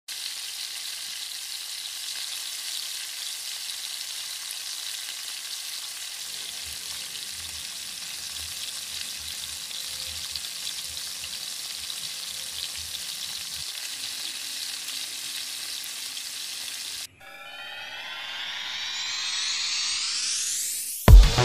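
Food sizzling steadily in hot oil in a pan. About seventeen seconds in it cuts off suddenly, and a rising electronic sweep builds up.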